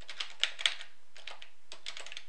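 Typing on a computer keyboard: an irregular run of key clicks as a web address is typed in.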